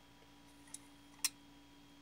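Quiet room tone with a faint steady hum, broken by two small clicks about half a second apart, the second one sharper, from a hand-held steam pressure control's sheet-metal case being handled.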